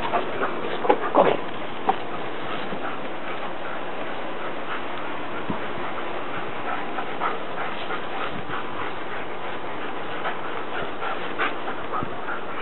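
German Shepherd dogs at play, with a few short dog sounds about one to two seconds in, then fainter scattered ones, over a steady background hiss.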